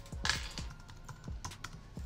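Typing on a computer keyboard: a short run of key clicks, closest together in the first half second, as a word is typed into a search box.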